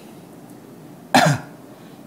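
A man coughs once, briefly, about a second in, in a pause between speech; the rest is quiet room tone.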